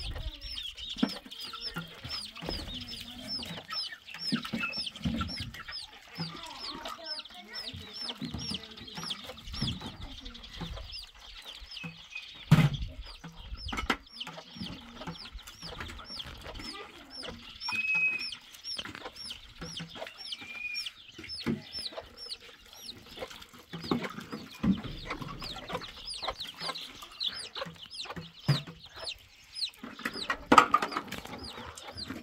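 Chickens clucking against a steady run of short, high chirps about three a second. Water from a plastic jerrycan splashes over dishes in a basin, with knocks of dishes, and one sharp knock about twelve seconds in is the loudest sound.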